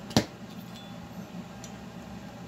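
A single sharp metallic click, a hand pick knocking against the chainsaw cylinder, followed by a low steady background hum.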